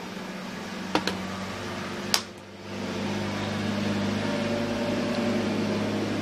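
Steady low hum of a small motor with a noisy hiss, a little louder from about halfway through, and two short clicks in the first seconds from small objects being handled.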